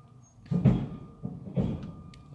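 Shipping-yard commotion: two heavy bangs about a second apart.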